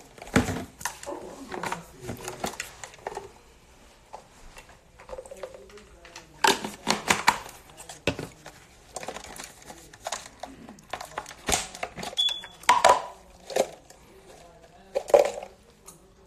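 Plastic jars handled and set down on a granite countertop: a string of short, sharp knocks and clicks.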